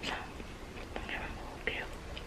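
A woman whispering softly in short, breathy snatches.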